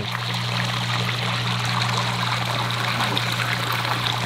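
Water running and splashing steadily into a pond from an inflow, with a steady low hum underneath.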